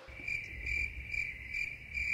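Cricket chirping sound effect: a steady run of short, high chirps, about two a second, starting suddenly at the cut. This is the comic 'crickets' cue for an awkward silence.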